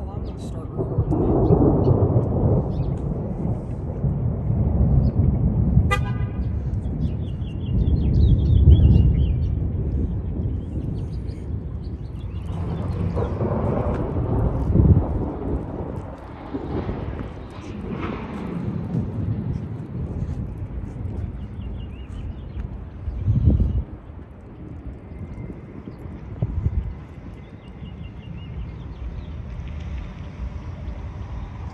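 Thunder rumbling in long, low rolls that swell and fade over several seconds at a time, with a shorter, louder rumble late on.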